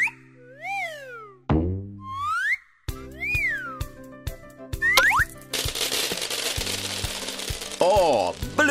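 Cartoon sound effects over children's background music: several rising-and-falling whistle glides and a falling boing. About two-thirds of the way through, a steady hiss sets in and carries on.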